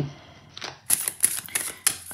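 A tarot deck being shuffled by hand: a quick run of crisp card clicks and slaps that starts about a second in.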